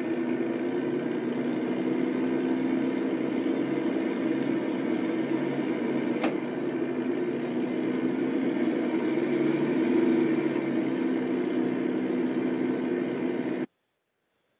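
Driving simulator's car-engine sound, a steady hum, played back over a video call's audio. A single click about six seconds in, and the sound cuts off suddenly near the end.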